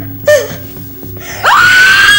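A woman's voice gives a short cry, then about one and a half seconds in breaks into a loud, high scream that rises sharply and holds its pitch. A low, steady music drone runs underneath.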